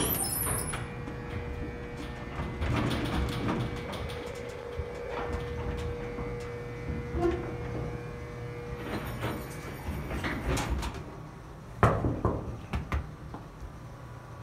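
Schumacher freight elevator in operation: a call button clicks, then the machinery hums with a steady whine lasting about eight seconds. Near the end come a loud metal clank and a few rattling knocks from the elevator's door gear.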